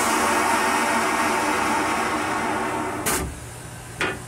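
Railcar toilet flushing: a loud, steady rushing and whirring that stops with a sharp clunk about three seconds in, leaving a quieter hum.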